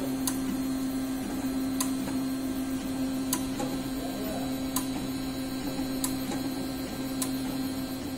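Home-built CoreXY 3D printer's stepper motors running steadily as it lays down the first layer of a print, with a constant tone and faint ticks about every second and a half.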